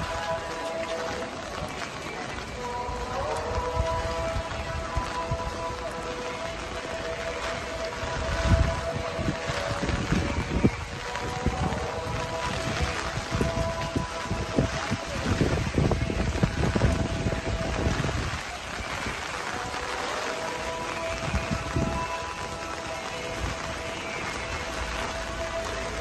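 Music with long held notes, over a steady hiss of rain falling on wet pavement, with irregular low bumps and rumbles.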